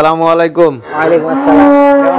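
Holstein Friesian dairy cows mooing: a lower moo that falls in pitch at its end, then a higher, steady moo held for over a second.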